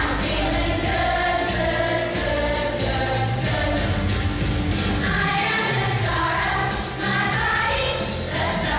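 Third-grade children's choir singing a song together, with a low instrumental accompaniment sustained beneath the voices.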